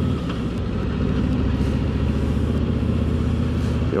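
2024 Harley-Davidson Road Glide's stock Milwaukee-Eight 117 V-twin running steadily under way, a low exhaust rumble with a slight change in note about half a second in.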